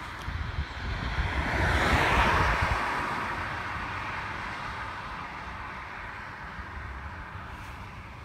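Outdoor background noise: a rushing sound that swells about two seconds in and slowly fades, over a low rumble.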